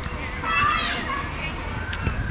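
Children's voices outdoors, with a child's high-pitched cry or call about half a second in, over a low rumble.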